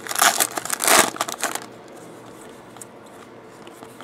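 A foil trading-card pack being torn open and crinkled, loudest in the first second and a half. After that comes a quieter rustle as the cards are handled.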